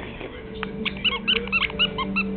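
A rubber squeaky dog toy squeaked in quick succession, about eight short high squeaks in a little over a second, as a puppy chews it.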